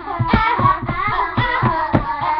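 Young girls singing along to a pop song that plays with a steady, quick beat.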